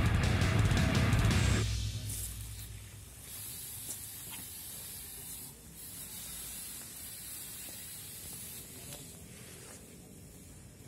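Electric-guitar rock music that cuts off about a second and a half in, followed by the hiss of insecticide being sprayed at a wasp nest, in two long stretches with a short break between them.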